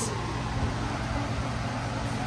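Large fan running, really loud: a steady noise with a low hum beneath it.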